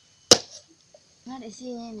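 A single sharp, loud chop of a machete blade into a young green coconut, about a third of a second in.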